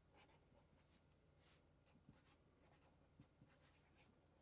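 Near silence, with the faint scratching of a marker pen writing an autograph across a photo in short strokes.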